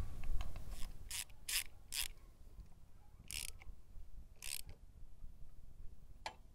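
Socket ratchet wrench clicking in short bursts, four in quick succession and then two more spaced out, as the oil strainer cap with its new O-ring is snugged back into the crankcase of a Honda NX 150 engine.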